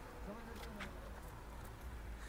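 Quiet open-air background: a steady low rumble with a faint buzz.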